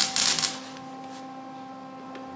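Welding arc crackling for about the first half second as a snowmobile's broken exhaust pipe is welded up. The arc then stops, leaving a steady low hum.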